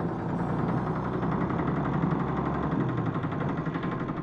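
Auto-rickshaw engine running with a steady, rapid chugging beat.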